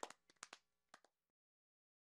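The faint tail of a round of hand claps: a few sharp claps fading away, the last ones barely audible about a second in.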